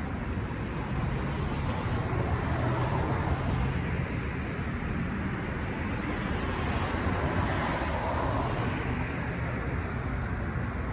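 Street traffic noise: a steady rumble of passing cars, swelling and fading twice as vehicles go by.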